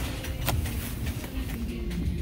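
Low rumble and handling noise from a hand-held phone camera being moved, with one sharp click about half a second in.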